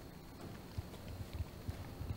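Footsteps: a handful of soft, low thuds in an uneven walking rhythm, starting under a second in.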